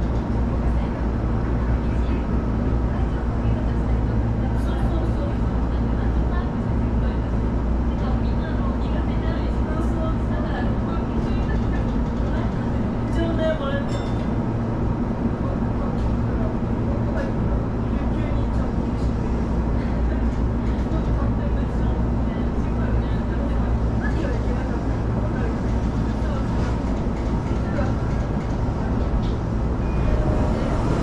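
Sotetsu commuter train heard from inside the car, giving a steady low hum as it creeps into a station at walking pace, slowing almost to a stop.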